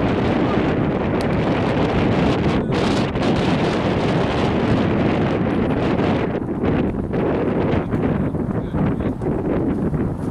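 Wind buffeting the camera microphone, a steady rumbling noise that wavers and thins somewhat from about halfway through.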